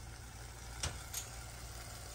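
A steady low hum with two sharp taps a little under a second in and just after a second: a spatula knocking against a stainless steel saucepan while stirring thick tomato gravy.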